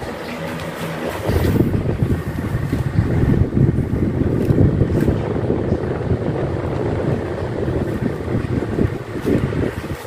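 Electric fans running with a steady hum; from about a second in, the yellow Cosmos stand fan's airflow blows straight onto the microphone, giving a loud, gusty low wind noise.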